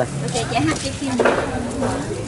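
Kitchen sounds at a stove with a pot of steaming broth: metal pots and utensils clinking over a steady stirring, bubbling noise, with voices in the background.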